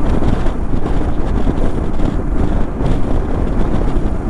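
Wind buffeting the camera's microphone on a Royal Enfield Himalayan motorcycle at highway speed, over a steady rush of engine and road noise.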